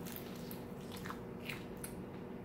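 A man biting into and chewing a deep-fried egg roll with a crispy wrapper, with a few faint crunches.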